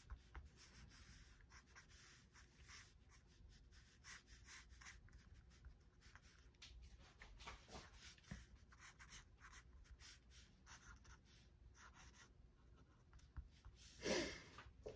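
Faint scratching of a pen nib on paper in many short, quick strokes and dabs, as small ink marks are added to a drawing.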